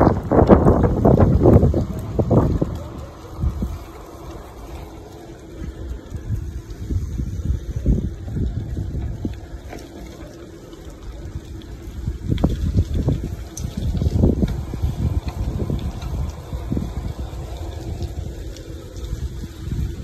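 Wind buffeting the microphone of a phone carried on a moving bicycle, as irregular low rumbling gusts that are loudest in the first couple of seconds and then ease off.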